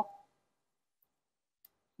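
Near silence after a spoken word trails off, with one faint tick about one and a half seconds in.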